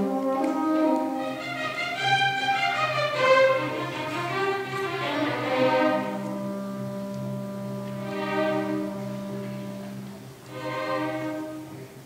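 Youth symphony orchestra playing a new classical piece, strings and brass together. A low note is held from about six seconds in, and the music grows softer toward the end, with two short swelling phrases.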